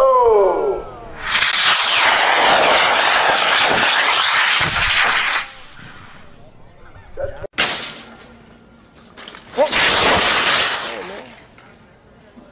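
Rocket motor burning with a loud, steady hiss for about four seconds. Later comes a single sharp crack, then a second, shorter rush of noise.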